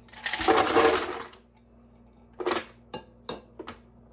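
Ice cubes poured from a pitcher into an empty plastic blender jar: a loud rattling clatter of about a second, followed by a few separate sharp knocks.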